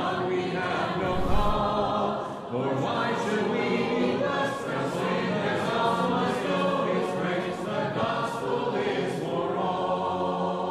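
Choir of mixed voices singing a cappella, with no instruments, as closing theme music.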